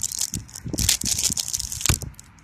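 Plastic-foil blind bag crinkling and tearing as it is opened by a gloved hand: irregular crackles, with a sharp louder one near the end.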